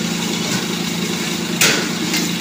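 Restaurant kitchen while a wok is being worked: a steady motor hum, with one short, sharp hiss about one and a half seconds in.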